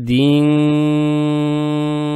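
A man's voice in melodic Quran recitation, holding one long drawn-out syllable on a steady pitch, the elongation of tajweed; the note opens with a slight upward glide.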